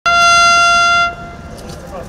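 A loud, steady horn-like tone held for about a second, which cuts off suddenly and leaves only quieter open-air background.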